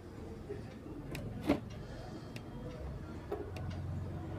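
Low hum with scattered faint clicks and crackles from a test speaker wired to an old Sony cassette car stereo's audio board, as the input of its equalizer IC is touched and tested; one sharper click about halfway through.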